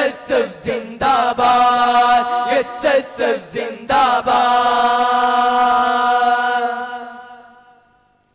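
Voices singing a Malayalam revolutionary song (viplava ganam) in a chant-like style, first in short, clipped phrases, then holding one long final note from about halfway that fades away to silence at the end: the close of the song.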